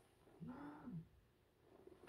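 Near silence, broken about half a second in by one faint, brief voice-like call, lasting about half a second, whose pitch rises and then falls.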